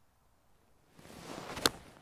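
Golf eight iron swung from the fairway: a rising swish of the club through the air, ending in one sharp, crisp click as the clubface strikes the ball, about a second and a half in.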